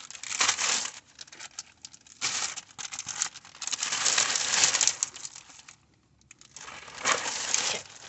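Thin plastic shopping bag rustling in irregular bursts as items are packed into it, with a short pause about six seconds in.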